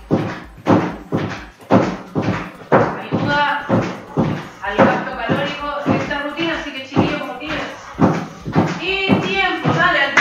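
Rapid footfalls on an aerobic step platform, a steady run of thumps about three a second, over background music with a voice.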